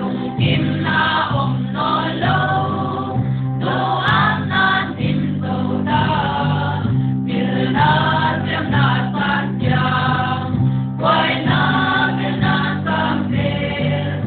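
A choir singing a gospel praise song in phrases over a sustained instrumental accompaniment.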